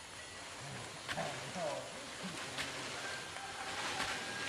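Faint low men's voices, talking loosely, with a few sharp knocks, the first about a second in.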